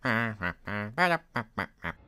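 A man's cartoon voice singing a wordless tune: a few held, wavering notes, then short quick ones near the end.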